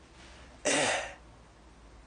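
A man clearing his throat once: a short, noisy burst lasting about half a second.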